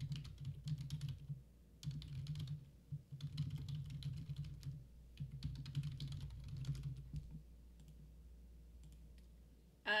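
Typing on a computer keyboard in four short bursts of key clicks, stopping about seven seconds in.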